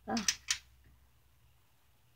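Two sharp clicks of push-button switches on a 1950s Crosley stove's control panel being pressed, about half a second in.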